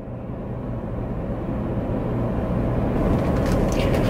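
Car engine and road noise heard from inside the cabin, growing steadily louder as the car pulls away and gathers speed.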